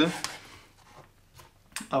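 A chef's knife cutting through the firm crust of a baked seitan loaf on a wooden cutting board: a short rasp, then a few faint taps.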